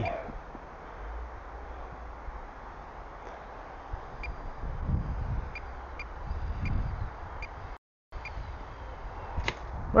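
Wind rumbling on the microphone, with a faint high whine and a few light ticks above it. The sound cuts out for a moment about eight seconds in.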